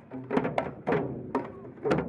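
Pung, the Manipuri hand-beaten barrel drum, struck by several dancers at once: sharp open strokes about twice a second, each with a short ring.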